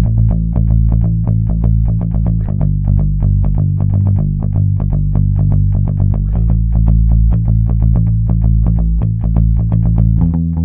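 Electric bass guitar playing a steady, even rhythm of repeated single low notes at about 116 beats per minute. The note shifts about two and a half seconds in and again about six seconds in, moving from the verse line into the pre-chorus.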